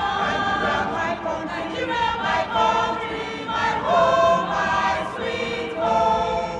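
A choir of men and women singing together, holding notes that shift in pitch every second or so.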